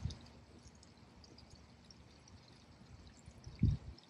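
Faint, steady outdoor hiss between spoken cues, with one short low thump near the end.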